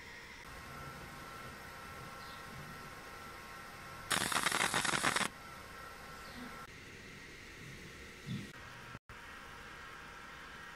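CO2 laser marking machine firing as it marks a QR code onto a circuit board: a loud, harsh hiss about four seconds in that starts and stops abruptly after about a second. A steady machine fan hum runs underneath.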